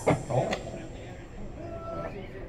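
A man's voice briefly saying "Oh", followed by quiet background noise and a faint held note near the end.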